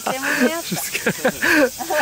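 People's voices, laughing and talking indistinctly, with breathy hissing between bursts.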